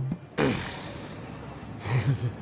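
A man's sharp, breathy gasp about half a second in, fading away after it.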